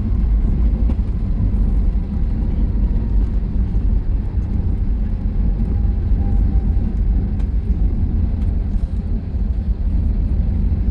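Steady low rumble of an airliner's engines and wheels heard from inside the cabin as the jet rolls along the airfield after landing.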